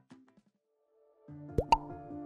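Light background music fades out and there is a short silence. The music comes back with two quick rising pop sound effects about a second and a half in.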